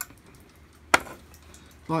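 A single sharp knock about a second in, over quiet room tone.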